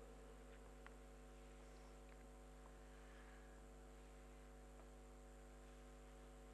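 Near silence with only a faint steady electrical hum, the mains hum of the recording chain.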